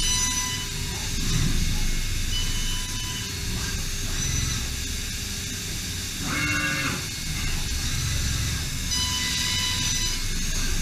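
DMG Mori DMU 65 monoBLOCK five-axis CNC machining center milling an aluminum block under flood coolant: steady cutting noise with coolant spray hiss and a high cutting tone that comes and goes. About six seconds in, a brief whine rises and falls for under a second.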